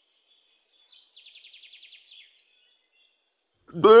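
Faint birdsong: a quick, high, rapidly repeated chirping trill lasting about a second and a half.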